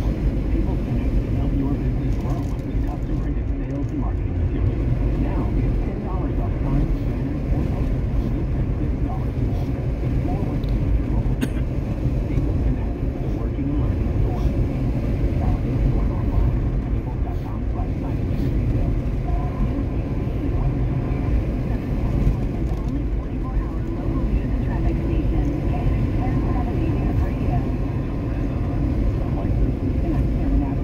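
Steady road and engine rumble heard from inside a moving car's cabin.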